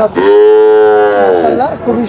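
A young bull calf mooing: one loud, long call of about a second and a half.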